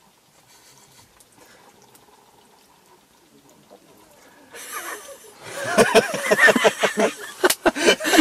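Faint sipping of fermented milk from a small bowl, then from about five and a half seconds in, loud laughing and exclaiming voices.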